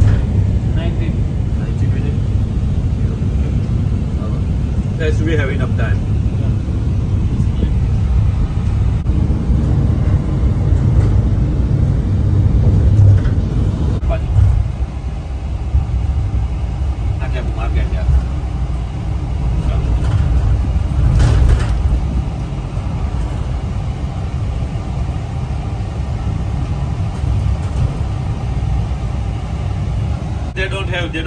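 Road and engine noise inside a moving van's cabin: a steady low rumble that eases a little about halfway through.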